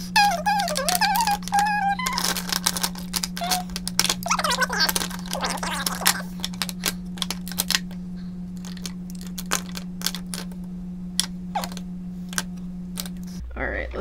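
Plastic lip gloss tubes clicking and clacking against each other as a hand shuffles and rearranges them in a wooden drawer tray: many light, quick taps, scattered irregularly.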